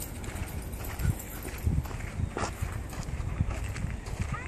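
Footsteps on a sandy path: irregular low thuds about twice a second, with one sharper click a little past halfway.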